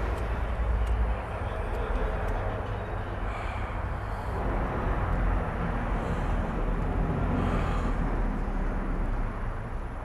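Steady outdoor city ambience picked up by the camera microphone: a low rumble like distant traffic under an even hiss, with no single event standing out.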